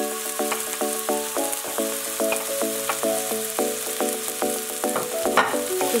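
Chopped onions and garlic sizzling steadily in hot oil in a frying pan as they are stirred, under background music with a regular run of notes.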